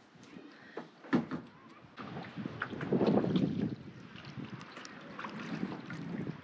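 Kayak paddling: water sloshing and splashing as the paddle works, louder for a stretch near the middle, with a sharp knock about a second in.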